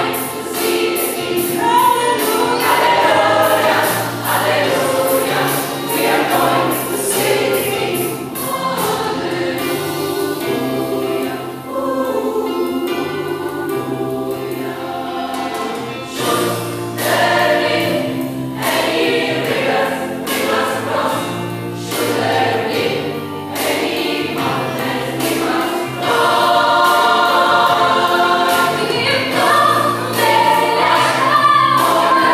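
Gospel choir singing in full voice, with a steady beat of sharp strokes running under the voices in several passages.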